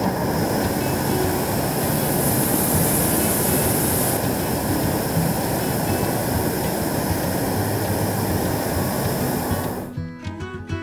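Hot air balloon's propane burner firing in one long blast of nearly ten seconds: a loud, steady rush of flame that cuts off suddenly near the end.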